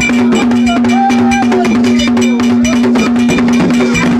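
Live gagá percussion: hand drums and other percussion beating a fast, even rhythm over a steady low held tone, with a few sung notes above.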